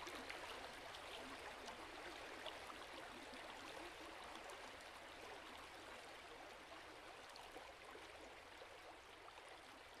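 Faint, steady hiss-like noise, with scattered tiny clicks, slowly fading out. No piano is heard.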